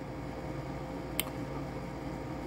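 Room tone: a steady low hum with one short click a little past a second in.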